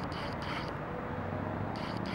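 Steady outdoor background noise: an even hiss over a low hum, with no distinct events.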